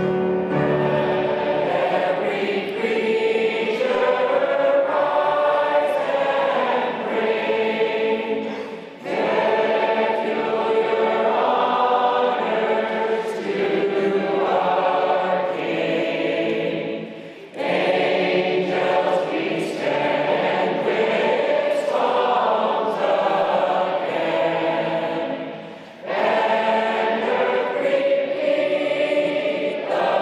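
Church congregation singing a hymn verse with piano accompaniment, in long phrases with brief pauses between them.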